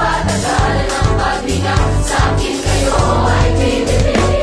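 A large choir of some four hundred voices singing together over an instrumental backing with a pulsing bass beat.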